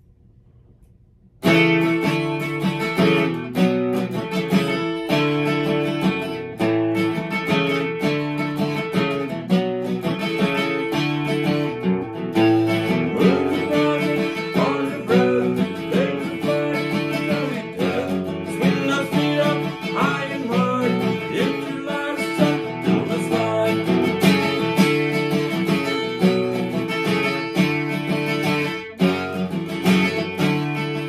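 Steel-string acoustic guitar strummed at a fast pace, starting about a second and a half in after a brief quiet, and playing on without a break.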